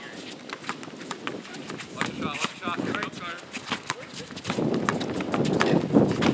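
A basketball being dribbled on an outdoor hard court, with sharp bounces, under players' voices calling out. The activity grows louder in the last second or two.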